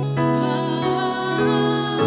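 Slow worship-band music: sustained keyboard chords that shift about a second and a half in, with a woman's singing voice.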